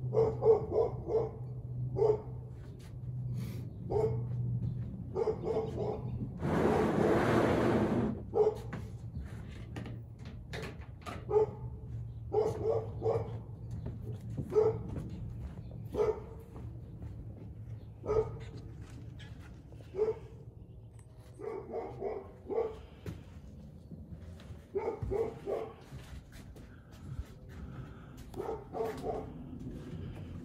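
A dog barking over and over, single barks every second or two, with quicker runs of barks in the last third. About seven seconds in, a loud hiss lasts a second or so, and a steady low hum runs underneath for the first two-thirds.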